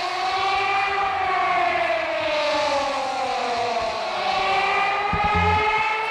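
A long siren-like wail: one steady pitched tone that rises, falls slowly and rises again, with a few low thumps near the end.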